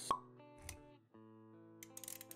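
Motion-graphics intro sound effects over soft background music: a sharp pop right at the start, a dull low thud about half a second later, then held music notes come back in after a brief gap.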